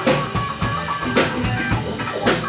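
Live rock band playing: distorted electric guitars and bass guitar over a drum kit, with strong drum hits about a second apart.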